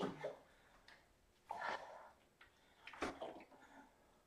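Water sloshing inside a gallon plastic jug as it is swung out to the side in chops, twice, about a second and a half apart.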